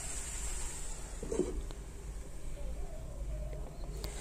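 Boneless chicken dry fry cooking down in a pan on a gas stove: a quiet, steady sizzle and hiss as the last of the juices cook off. A short low sound comes about a second and a half in.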